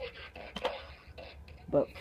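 Bop It Extreme 2 toy sounding faintly from its small speaker while its batteries are nearly flat, with a short click about two-thirds of a second in. A spoken word comes near the end.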